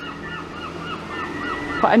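A bird calling in a quick run of short, repeated calls, about four a second, over street background.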